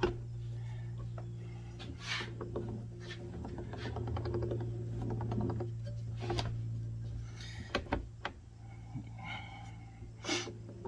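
Scattered metallic clicks and knocks from a bench-mounted, hand-cranked ring roller being adjusted and a flat steel bar being handled in its rollers, over a steady low hum.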